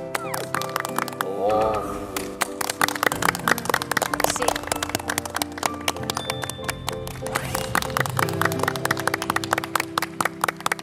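Background music with held tones, under clapping: many sharp, irregular claps run through almost all of it. A short wavering voice rises over it about a second and a half in.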